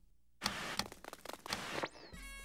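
Cartoon television static hissing with faint clicks as the TV is tuned through the channels, ending in a short falling whistle as a station comes in.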